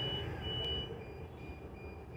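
A rapid series of short, high-pitched electronic beeps over a low rumble that grows quieter in the second half.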